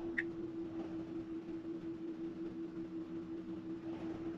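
Steady electric hum inside a Tesla as it slowly reverses itself into a diagonal parking space under auto park, with one short high beep just after the start.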